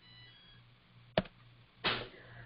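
Quiet room tone with a steady low electrical hum, broken by one short, sharp click a little over a second in and a brief puff of noise just before the end.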